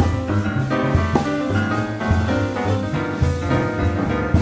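Jazz piano trio playing a swinging tune: plucked double bass notes about twice a second under piano chords, with drum-kit cymbal strokes.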